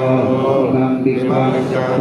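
Buddhist chanting in Pali: voices reciting a donation-offering formula to the monks in a steady, held monotone.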